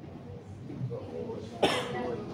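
A single short cough about one and a half seconds in, over faint murmured voices.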